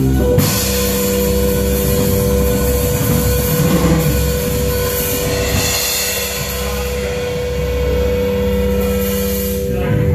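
Fusion trio of double bass, electric bass and drum kit holding a long sustained closing chord under a wash of cymbals, ending the tune; the held notes stop right at the end.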